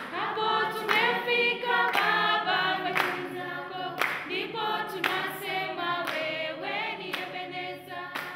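A group of students singing together in unison and clapping their hands in time, about once a second.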